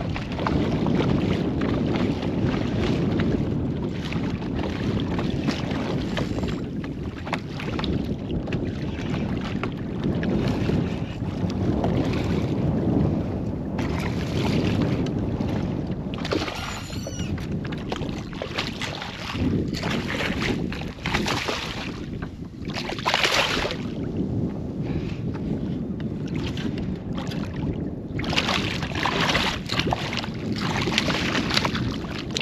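Wind on the microphone and choppy water slapping a kayak hull, with repeated sharper splashes; near the end a hooked striped bass splashes at the surface beside the kayak.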